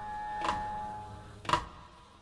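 Wall clock ticking, two ticks about a second apart, over a single held music note that fades away.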